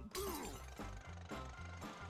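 Cartoon soundtrack: a sudden crash right at the start and a character's short "ooh", over background music with a steady low beat.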